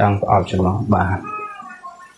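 A man speaking, then a quieter, high-pitched, drawn-out call in the second half that fades out.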